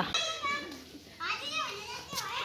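High-pitched children's voices talking and calling out in the background, fainter than close speech, in two short stretches.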